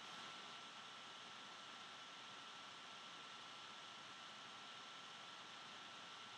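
Near silence: steady faint hiss of room tone with a thin, steady high-pitched whine.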